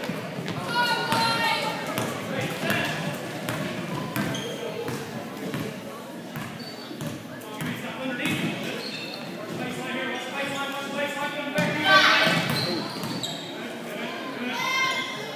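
Basketball bouncing on a hardwood gym floor during play, with indistinct calls from players and spectators echoing in the large hall; a louder call rings out about twelve seconds in.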